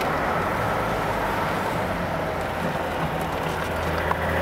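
BMW E21 323i's straight-six engine running at a steady cruise, a low even drone under continuous road and wind noise.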